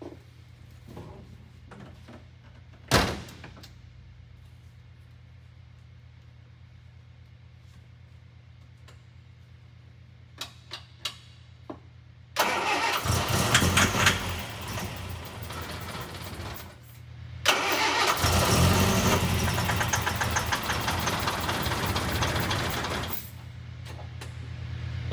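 A car door shutting with a thump about three seconds in and a few light clicks, then a Series V Sunbeam Alpine's four-cylinder engine being cold-started: about halfway through it cranks and fires for a few seconds, drops away briefly, then goes again for several seconds until just before the end.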